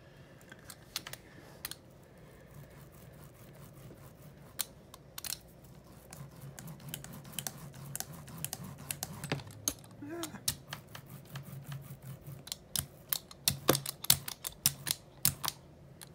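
Paint being worked over a plastic stencil on a gel printing plate: a run of small sticky clicks and ticks, sparse at first, growing denser and louder over the last few seconds.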